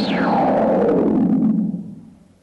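Synthesizer sound effect gliding down in pitch from a high peak, fading away about a second and a half in.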